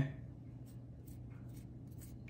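Quiet room with a few faint light taps as garlic powder is tipped from a small dish into a stainless steel mixing bowl of marinade.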